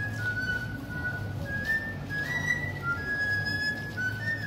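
Basque txistu, a three-hole pipe, playing a dance tune: a melody of held, whistle-like notes that step up and down in pitch.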